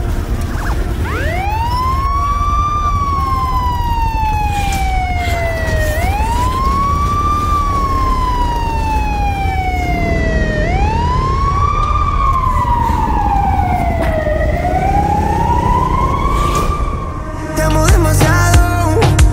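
Wailing siren in a song's outro: a tone rises quickly and slides slowly down, four times about every four and a half seconds, over a steady low bass. It fades near the end as louder music comes in.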